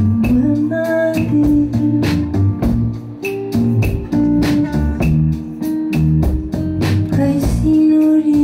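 A live song: a woman sings long held notes to her acoustic guitar, with a bass line and a regular beat underneath.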